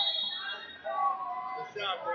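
Indistinct voices of people talking and calling out in the crowd.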